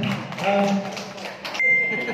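A person's voice talking over a loudspeaker-like hall sound, breaking off abruptly about one and a half seconds in, followed by a short steady high-pitched beep.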